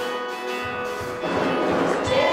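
Worship music between sung lines: acoustic guitar strumming under held notes, filling out toward the end.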